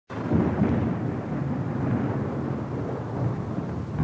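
A low, steady rumbling noise like a thunderstorm sound effect, cutting in abruptly just after the start, as the intro to a heavy metal track.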